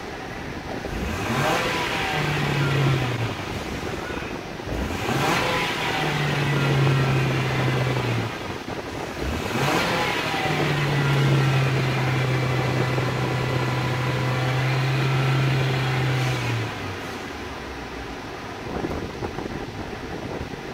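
Mitsubishi Lancer 2.0-litre four-cylinder engine revved three times in Park. The third rev is held steady at about 4,500 rpm for around six seconds, then drops back to idle near 1,000 rpm.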